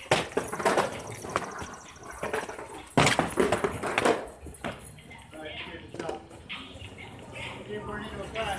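Skateboards on rough asphalt: wheels rolling and decks clacking against the ground several times, the loudest close up about three to four seconds in, with people's voices alongside.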